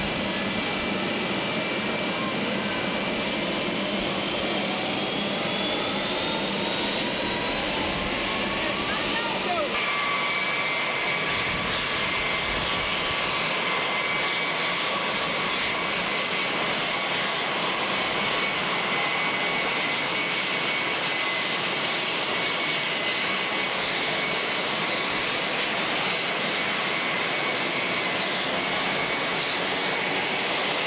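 Air Force One's jet engines running on the ramp: a steady loud rushing noise with several high whining tones. In the first ten seconds some of the tones rise slowly in pitch; after a sudden change about ten seconds in, they hold steady.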